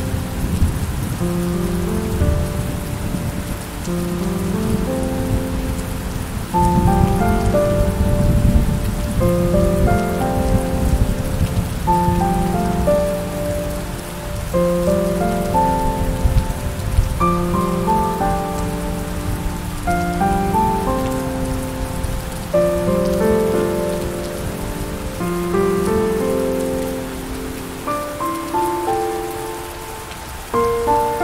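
Steady rain falling with slow, gentle piano music playing a chord or a few notes about every second or two, over a low rumble.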